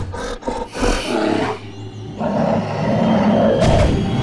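A giant bear, a monster-bear sound effect, gives a few short growls, then a long loud roar from about two seconds in as it charges.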